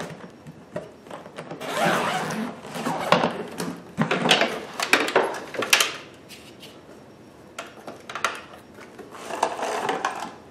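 Handling of a hard-shell carry-on suitcase and the plastic hard cover of a sewing machine: a rasping, rustling stretch, then several sharp plastic knocks and clicks as the case is opened and the cover lifted off, and a rubbing scrape near the end.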